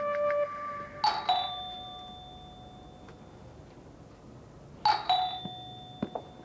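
Two-tone doorbell chime sounding 'ding-dong' twice, about four seconds apart: each ring is a higher strike followed by a lower one, both ringing and fading away.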